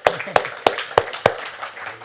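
A short round of applause from a small audience. One pair of hands claps loudly and distinctly close to the microphone, about three claps a second, over lighter scattered clapping. It dies away about a second and a half in.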